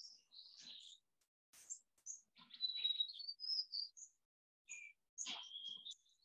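Birds chirping and whistling, with a longer whistled phrase in the middle that rises slightly in pitch.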